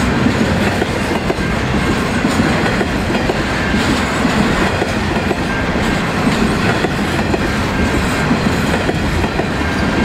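Container freight train wagons rolling past close by: a steady, loud rumble and clatter of steel wheels on the rails.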